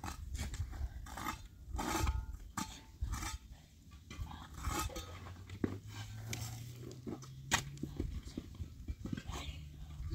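Steel shovel digging into stony earth and throwing soil, with irregular scrapes and crunches of the blade on gravel and stones and the knock of clods landing on the mound.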